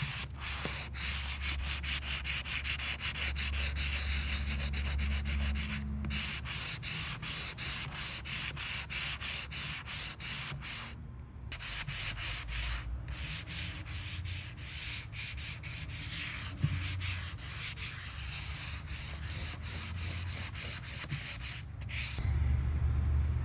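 Sanding sponge rubbed by hand over a dried milk-paint finish on a wooden tabletop, in quick back-and-forth scraping strokes of about three a second, with a short break about eleven seconds in. The sanding knocks loose chips of the crackled paint to distress the finish.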